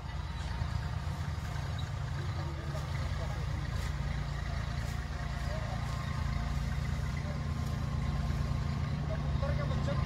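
Kubota B2441 4x4 compact tractor's three-cylinder diesel engine running steadily as it pulls a tillage implement through a field, slowly growing a little louder.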